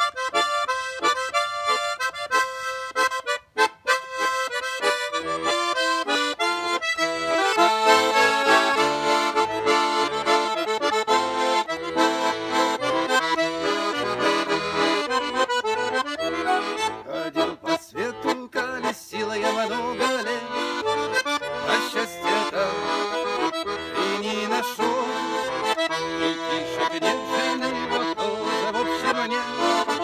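Russian garmon (button accordion) playing the instrumental introduction of a song. It opens with separate short notes, and fuller chords with a bass line come in after about seven seconds.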